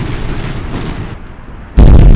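Explosion sound effect: a deep rumble dies away, then a sudden, very loud blast goes off near the end.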